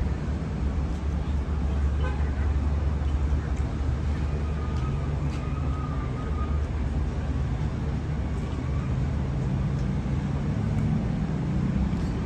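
Steady low noise of road traffic passing by, with no sharp or distinct events.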